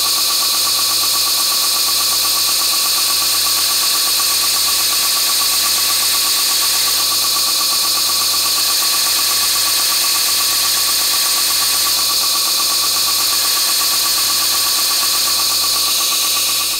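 Belt grinder running steadily with a 120-grit belt while a 6.5 mm twist drill bit, spun by a cordless drill, is ground against the belt's sharp edge to form a 4 mm pilot for a counterbore step drill. It makes a loud, even machine sound with several fixed tones.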